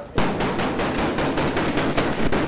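Rapid automatic gunfire: a sustained burst of shots in quick succession, starting a moment in, from a firearm in an armed-police training exercise.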